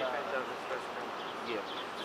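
A pause in the talk filled by faint chatter of people in the background, with a man saying "yeah" near the end.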